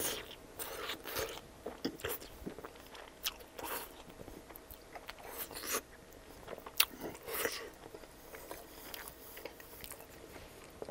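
Close-miked biting and chewing of a pizza slice topped with fresh arugula: a bite at the start, then the crust and leaves crunch in irregular bursts, with one sharp snap a little past halfway.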